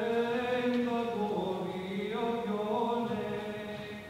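Priest chanting a line of the Eucharistic liturgy solo: one male voice holding sung notes with slow steps in pitch, fading toward the end.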